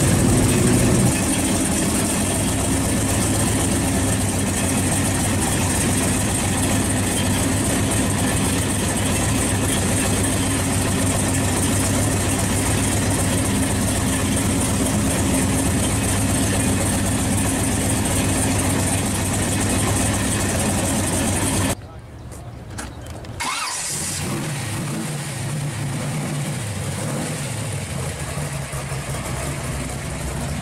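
Supercharged V8 in a Chevy Vega idling steadily. After a break about 22 seconds in, a second V8 comes in, idling more quietly.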